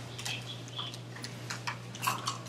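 A few scattered light clicks over a steady low hum.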